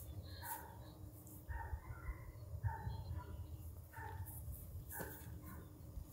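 Faint, short animal chirps, about one a second, over a low rumble of wind on the microphone.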